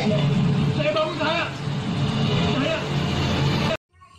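Voices from a television soap opera over a steady low rumble, picked up from the TV set's speaker by a phone; the sound cuts off abruptly near the end.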